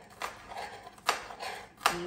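Chef's knife chopping garlic cloves on a wooden Boos Block cutting board: a few irregular knocks of the blade on the board, the two loudest about a second in and near the end.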